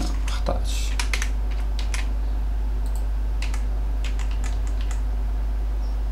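Computer keyboard typing: scattered keystroke clicks, a quick run in the first two seconds and a few more about three to five seconds in, over a steady low hum.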